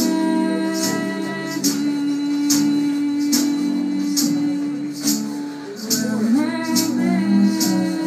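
Live acoustic band playing: strummed acoustic guitar under held sung notes with a vocal harmony, and hand percussion keeping a steady beat a little faster than once a second.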